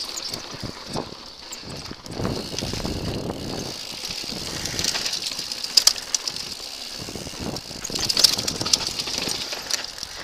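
Mountain bike ridden fast down a dirt forest trail, heard close up from the handlebars: tyres rolling over dirt with the bike rattling and clattering over bumps, and sharp knocks about six and eight seconds in.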